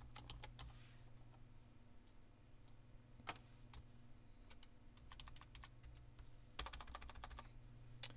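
Faint computer keyboard typing in short runs of keystrokes: a run at the start, a single key around three seconds in, and two quicker runs in the second half. A steady low hum runs underneath.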